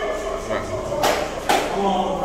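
Several people's voices talking in a corridor, with two sharp knocks about half a second apart, a little after a second in.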